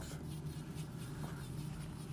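Dremel Stylo+ pen-style rotary tool buzzing steadily as its burr grinds into the wood.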